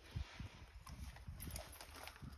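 Faint, irregular footsteps on a concrete path: a few light taps and soft low thumps.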